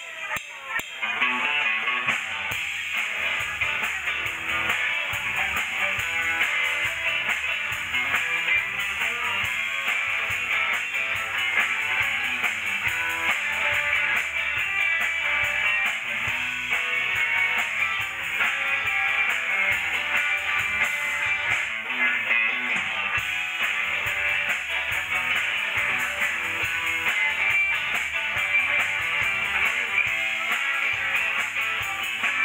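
Live rock band playing: electric guitars with bass and drums, starting up about a second in and then running on steadily.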